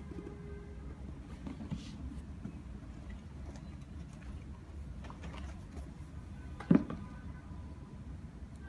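Light handling of a cardboard shoe box over a steady low rumble, then a single sharp knock on the box, the loudest sound, a little under seven seconds in as a sneaker is set down on its lid.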